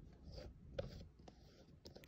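Faint scratchy rustling and a few light clicks, with one sharper tick a little under a second in.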